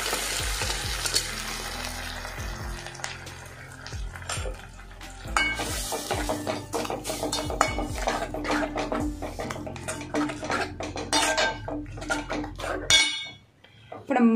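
Cooked mung beans poured into a hot tempering of oil, curry leaves and red chillies in an aluminium pan, sizzling and fading over the first few seconds. Then a steel spoon stirs the mash, scraping and clinking against the pan, until it stops suddenly near the end.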